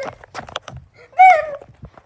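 Children's voices and scuffling: a quick run of knocks and bumps as they scramble on the floor, then a short high cry about a second in that falls in pitch.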